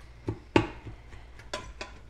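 Wooden spoon knocking and scraping against the stainless-steel inner pot of an Instant Pot while stirring ground beef and vegetables: about five sharp knocks, the loudest about half a second in.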